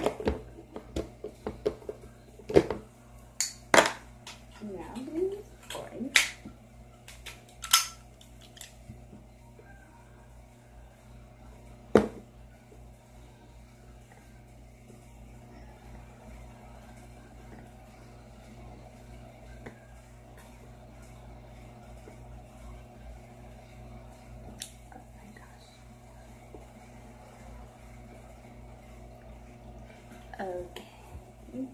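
Clicks and knocks of plastic craft pieces and tools being handled and set down on a tabletop, many in quick succession over the first several seconds and one more about twelve seconds in, then only a faint steady hum.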